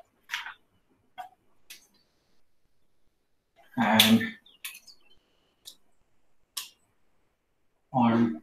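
Marker pen on a whiteboard: a few short strokes and a brief high squeak as it writes. About four seconds in there is a short burst of a man's voice, the loudest sound here.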